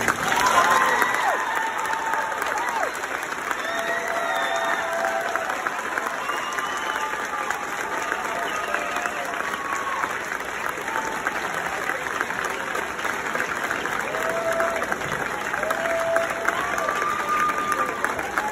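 Audience applauding steadily in a large, echoing gymnasium, with scattered whoops and voices over the clapping.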